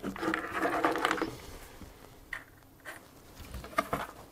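Handling noise from a Sinclair ZX81's plastic case being picked up and turned over: a dense scraping rustle for about the first second, then a few light knocks.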